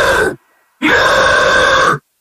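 Guttural extreme-metal vocal growls in a stop-start break of a song: two harsh held bursts of about a second each, both cut off abruptly into dead silence.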